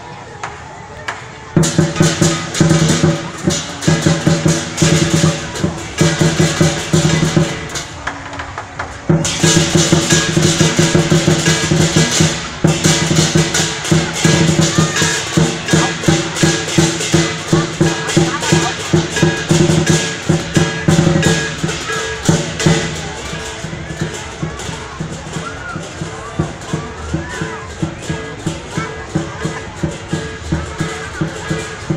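Lion dance percussion: a drum beaten in rapid strokes with clashing cymbals and a ringing gong. It comes in loud about a second and a half in, drops briefly near eight seconds, and eases off over the last third.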